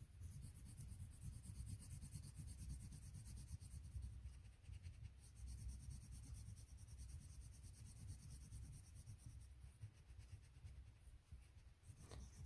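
Faint, continuous scratching of a soft-cored Spektrum Noir Colour Blend coloured pencil on paper, with quick back-and-forth strokes filling in a small colour swatch.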